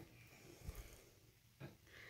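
Near silence: faint room tone, with a soft low thump about two-thirds of a second in and a brief faint sound near the end.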